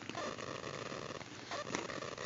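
Faint rustling and brushing of a coated-canvas and leather handbag being handled and turned by hand, over a low steady background hiss.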